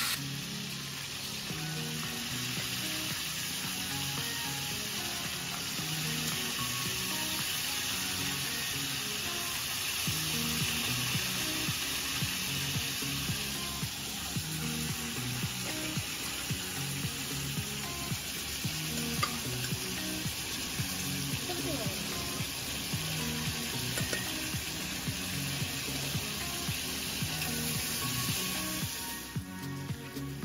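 Already-cooked mutton frying in vegetable oil in a wok: a steady sizzle that drops away near the end. Soft background music plays underneath.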